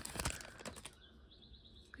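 Foil trading-card pack wrapper crinkling as it is peeled back and the cards are slid out, fading after the first second.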